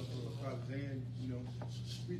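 Faint talking voices over a steady low hum, with light rustling.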